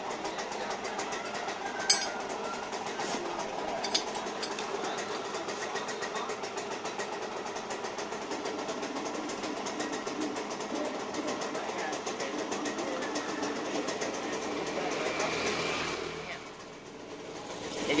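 A small engine running steadily with a rapid, fine clatter, dipping in level briefly near the end.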